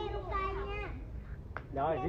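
Young children's high-pitched voices calling and chattering, with one short sharp click about a second and a half in.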